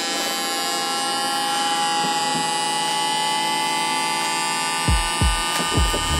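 Electric vacuum-pump motors running steadily, a motor whine with many overtones, as the pumps draw a vacuum in clear plastic cylinders. A string of low, short downward-sliding pulses joins near the end.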